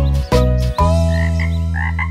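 Cartoon frog croak sound effects, a few short croaks in the second half, over the last bars of a children's song: short staccato chords, then a held final chord.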